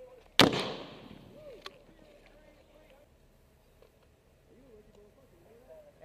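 A single loud gunshot about half a second in, its echo trailing off over about a second, during a rifle firefight.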